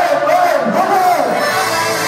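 Audience cheering and shouting, with one voice holding a high, wavering cry for about the first second.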